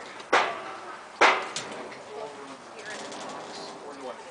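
Two sharp knocks about a second apart, each fading out over a fraction of a second, followed by faint voices in the background.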